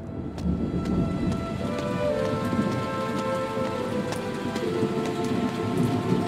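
Steady rain with a low rumble of thunder, a cartoon storm sound effect. Soft held music notes come in about two seconds in.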